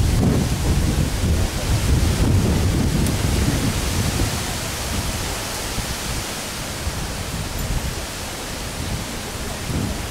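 Wind buffeting the microphone: a heavy low rumble that eases off after about four seconds, over a steady hiss.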